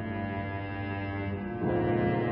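Cello playing slow, sustained low bowed notes, changing to a new, louder note about one and a half seconds in.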